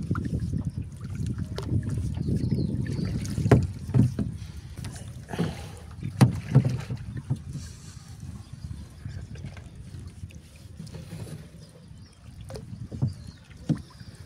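A gill net being hauled by hand over the side of a small boat, with water splashing off the net and a few sharp knocks, over a low rumble of wind on the microphone.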